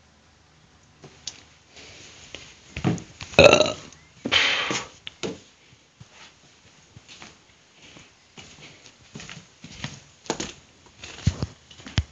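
A man's short throaty vocal sound about three and a half seconds in, followed by a breathy rush of air. Scattered knocks and rustles come from the phone being handled and moved.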